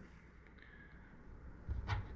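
Quiet room with faint handling of a clump of white saddle hackle feathers, and one short knock near the end.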